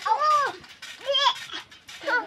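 A goat bleating twice: a call of about half a second, then a shorter one about a second later.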